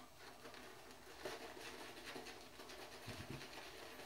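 Silvertip badger shaving brush swirling lather on a stubbled face and neck: a faint, soft scratching with a few slightly louder strokes.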